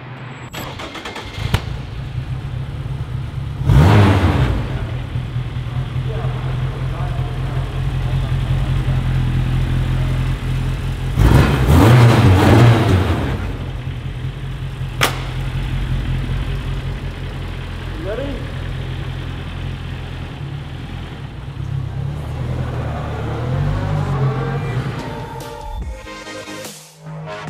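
BAC Mono's four-cylinder engine cold-starting about a second and a half in, then idling steadily, revved sharply twice; near the end it pulls away with its pitch rising. The sound echoes in a concrete parking garage.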